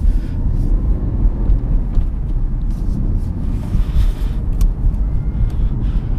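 Inside the cabin of a 2016 Cadillac ATS-V coupe as it accelerates on winter tires: the twin-turbo V6 and the tyres on the road make a steady low rumble. A few faint ticks come near the end.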